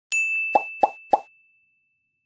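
Editing sound effects: a bright, high ding that rings on and slowly fades, with three quick pops about a third of a second apart.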